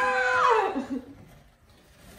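A toddler's long wordless vocal sound, high-pitched and held steady, then sliding down and stopping about a second in.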